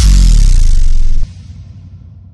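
Logo-sting sound effect for a news channel intro: a sudden, loud, deep boom hits at the start and holds for about a second, then drops away into a fading tail.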